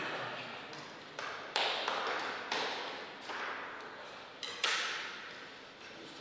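Table tennis ball tapped and bounced, with about seven sharp, irregularly spaced taps, each ringing briefly in a reverberant hall.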